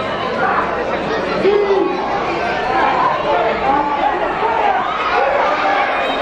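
Arena crowd talking and shouting, many voices overlapping at a steady level.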